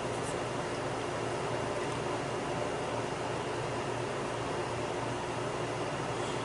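Steady, even background hiss with no distinct events: the room tone of a small workshop.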